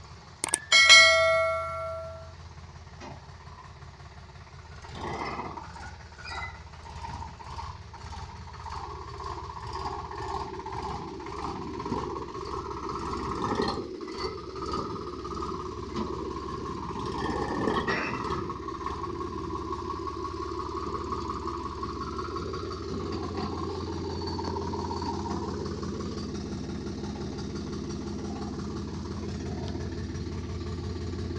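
A brief ringing tone about a second in. From about five seconds on, a Sonalika 745 tractor's diesel engine runs steadily, a little louder around the middle.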